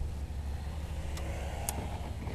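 Low, steady rumble of a 1991 Cadillac Brougham's V8 and road noise heard from inside the cabin as the car slows to a crawl, with a couple of faint clicks in the second half.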